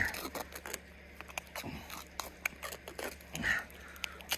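Duct tape being pulled off the roll and wrapped tight around a hose coupling: a string of small sharp crackles and clicks over a faint steady low hum.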